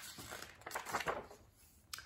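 Faint paper rustling as a large picture book's page is turned.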